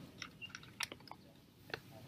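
A pause in a speech at a podium microphone: faint scattered clicks, about a dozen small ticks, with no words.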